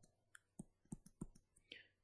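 A run of faint, irregular clicks from a stylus tapping and stroking on a touchscreen while handwriting a fraction.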